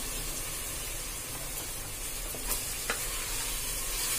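Sliced tomatoes and onions frying in oil, sizzling steadily while a wooden spatula stirs them through the pan, with a couple of light knocks from the spatula about two and a half and three seconds in.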